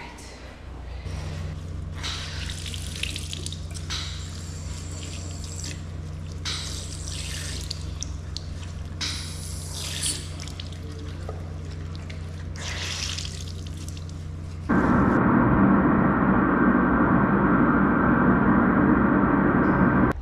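Faucet water running and splashing in a restroom sink as dark clothing is scrubbed and wrung by hand, over a steady low hum. About fifteen seconds in, a loud steady rushing noise starts suddenly and drowns it out.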